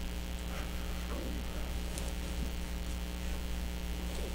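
Steady electrical mains hum: a low, even buzz with a stack of overtones.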